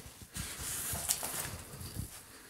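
Rustling and scuffing movement noise lasting about a second and a half, with a sharp click about a second in, as of someone stepping and moving over a debris-littered floor with a handheld camera.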